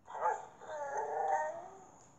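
A cartoon animal sound effect: a pitched, wavering vocal sound lasting about a second and a half.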